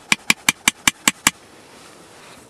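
A metal spoon clicking against the side of a metal cooking pot as food is scooped and stirred: about eight quick, sharp knocks at roughly six a second, stopping after a little over a second.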